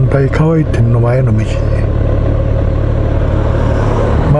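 Motorcycle engine idling with a steady low rumble while the bike waits at a traffic light.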